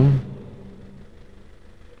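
The end of a spoken word, then a faint steady background hum with nothing else happening.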